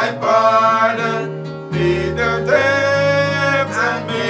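A hymn sung with acoustic guitar accompaniment, the voices holding long notes over steady bass notes, with a short break between phrases.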